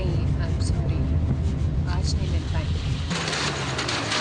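A car's engine gives a steady low rumble, heard from inside the cabin. About three seconds in, the rumble gives way to a loud hiss as a car comes on over wet ground.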